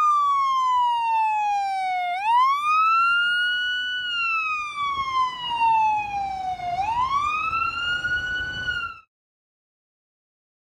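Converted ambulance's siren sounding a slow wail: the pitch falls slowly, sweeps quickly back up and holds briefly, about every four and a half seconds. It cuts off suddenly about nine seconds in.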